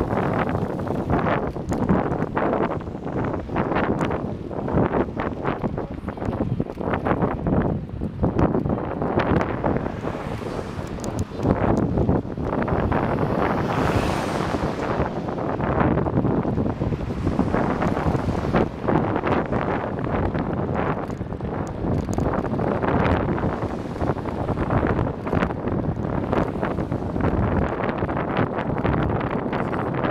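Wind buffeting the microphone of a camera moving with a cyclist along a road: a dense, gusting rumble that rises and falls, with a swell of hiss near the middle.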